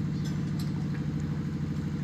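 Steady low machine hum, even in pitch and level throughout.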